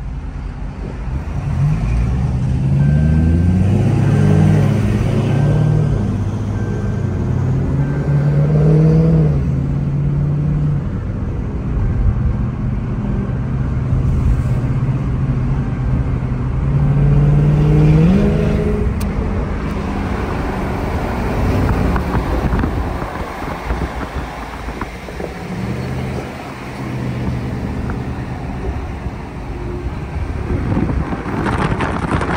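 Dodge V8 muscle-car engines accelerating hard in traffic, heard from inside a following car: the engine note climbs in pitch in steps as it goes through the gears, three times in a row, over steady road and tyre noise.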